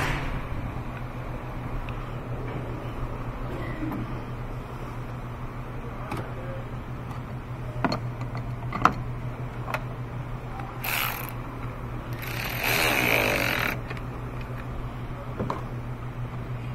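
Hand tools clicking and knocking on a car battery as the negative terminal clamp is fitted and tightened. There are scattered sharp clicks, then two short bursts of rapid ratchet clicking about eleven and thirteen seconds in, over a steady low hum.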